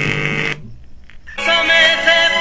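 Music playing back from a homemade single-IC micro SD card MP3 player through a loudspeaker, the player working on its first test. The music breaks off to a lower level after about half a second and comes back louder about a second and a half in, with long held notes.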